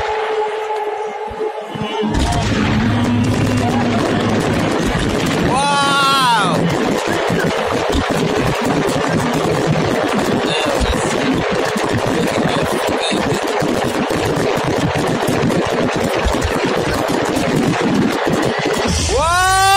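Fireworks display: a dense, continuous crackling of many small rapid bursts, starting about two seconds in after a quieter moment, with a brief rising tone about six seconds in.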